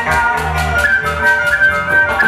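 Live Andean chimaychi band playing: a flute carries the melody over violin and harp, with bass notes and a steady percussion beat from metal-shelled timbales.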